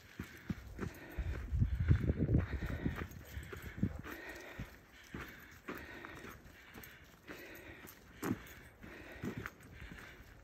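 A hiker's footsteps on a dirt trail, about two steps a second. A louder low rumble comes about a second in and lasts about two seconds.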